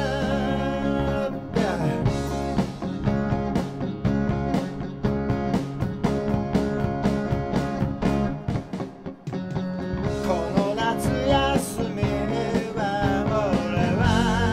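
Live rock band playing with electric guitars, bass and drums, a woman singing at the start and again from about ten seconds in. Between the sung parts is an instrumental passage with steady drum beats, which drops quieter for a moment near nine seconds.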